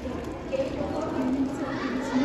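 Water pouring from an electric kettle in a steady stream into a large stainless-steel pot of chopped greens and liquid, splashing.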